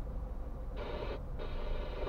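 Two buzzing horn beeps, a short one and then a longer one, over the low rumble of a car idling at a stop.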